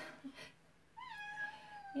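Domestic cat meowing: one long, drawn-out meow starting about halfway in, its pitch rising briefly and then slowly falling.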